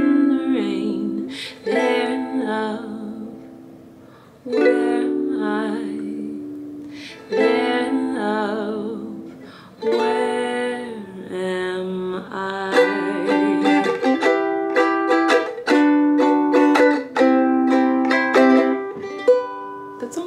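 A woman singing a slow ballad over her own ukulele, holding long notes with vibrato. About twelve seconds in the singing stops and the ukulele strums on alone.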